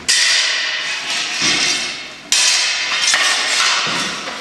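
Steel swords and bucklers clashing in sword-and-buckler fencing: two sharp metal strikes, one right at the start and one a little past halfway, each ringing out and slowly fading.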